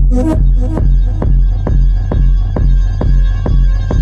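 Techno track in a DJ mix: a steady kick drum at a little over two beats a second over a deep bass and a sustained held synth tone, with a vocal snippet ending within the first second.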